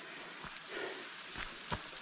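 Faint steady rush of a waterfall, with a soft swell of noise about a second in and a few light clicks.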